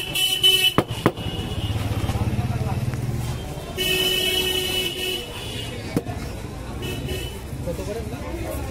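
Road traffic: a vehicle horn sounds briefly at the start and again for about a second and a half around four seconds in, over the low running of passing engines. Two sharp clicks come about a second in.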